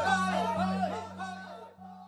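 Music with a short pitched figure repeating about twice a second over a steady low drone, fading out.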